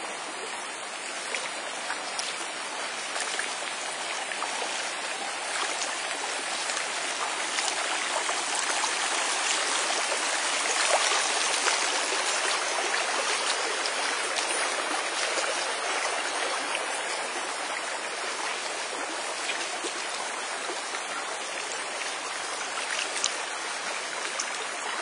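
Shallow rocky creek flowing and rippling over stones, a steady rushing hiss that swells a little midway.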